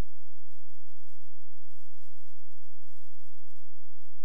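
Steady low electrical hum and hiss from the playback and recording chain, with faint irregular low thumps about twice a second; there is no programme sound.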